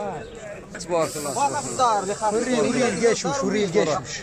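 Men's voices talking, not clearly addressed to the camera, with a steady hiss laid over them from about a second in.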